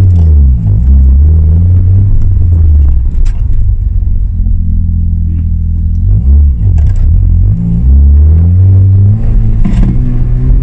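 Mazda RX-7 FD3S's twin-turbo 13B rotary engine under way, heard from inside the cabin. It holds steady revs for a few seconds, then its pitch drops and climbs again several times at gear changes in the second half.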